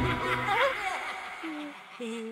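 A laugh in a cartoon voice over eerie, wavering theremin-like music, the sound dying down toward the end.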